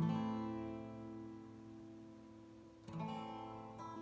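Acoustic guitar: a chord strummed once and left to ring, slowly fading, then a second chord strummed about three seconds in.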